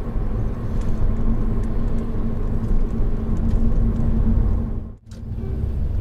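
Inside the cabin of a Honda Odyssey RB3 minivan on the move: a steady low rumble of engine and road noise with a faint steady hum. About five seconds in the sound drops out sharply for a moment and comes back, where the recording is cut.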